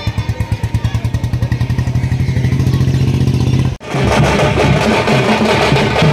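Drums beating a fast, even roll that speeds up until the beats run together. About four seconds in the sound breaks off abruptly, and loud band music with drums follows.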